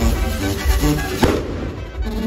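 Festive band music with a steady bass line, over which a torito's fireworks go off, with one sharp firecracker bang about a second in.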